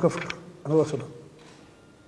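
A man's voice in two short fragments near the start, then a pause with only faint background.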